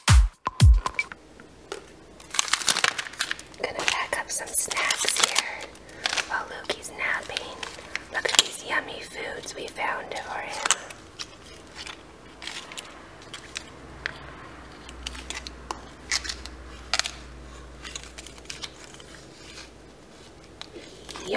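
Plastic squeeze pouches of baby food and snack-bar wrappers crinkling and clicking against a stone countertop as they are picked up and set down, busiest in the first half. A dance beat cuts off about a second in.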